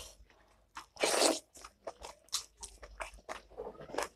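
Close-miked eating sounds: a person chewing food, with many short, wet mouth clicks and smacks. A louder crunch lasting under half a second comes about a second in.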